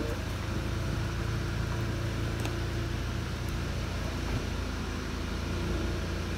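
Electric folding soft top of a 2011 Audi TT convertible running as the roof folds down, a steady mechanical hum over the 2.0 TFSI engine idling.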